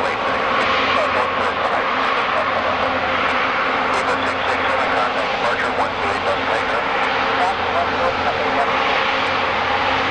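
Jet engines of a British Airways Airbus A350-1000 (Rolls-Royce Trent XWB turbofans) running steadily at taxi power as the airliner rolls close past.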